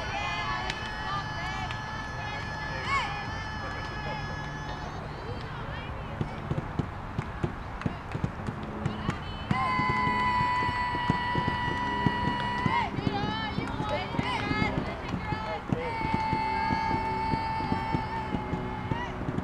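Youth softball players' voices chanting cheers, each call drawn out into a long held note, three times, with short shouted syllables and scattered claps in between.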